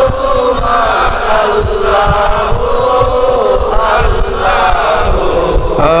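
A man's voice chanting the names of Allah in long, wavering melodic phrases through a PA microphone, with irregular low thumps underneath.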